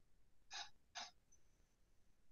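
Near silence broken by two short breath sounds, about half a second apart.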